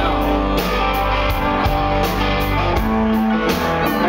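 Live alternative-country rock band playing loudly: electric guitars, bass and drum kit, with a steady beat of cymbal strikes, recorded from the crowd.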